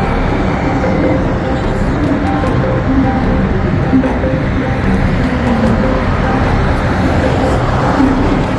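Recorded haunted-house soundtrack playing over outdoor speakers for the moving demon animatronic: music with a voice, over a steady wash of city traffic noise.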